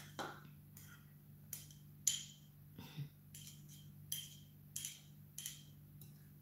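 Table knife scraping and tapping against a small ceramic dish while pushing crushed garlic into a ceramic cup: a series of light, irregular clicks and scrapes.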